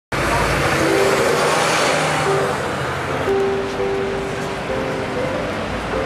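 A bus passing close by, its broad road noise strongest for the first two seconds or so and then easing into street traffic. Music with long held notes plays over it.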